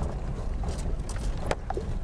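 Jeep driving slowly over a rough, rocky dirt road, heard from inside the cab: a steady low engine and road rumble with rattles and knocks from the bumps, one sharper knock about a second and a half in.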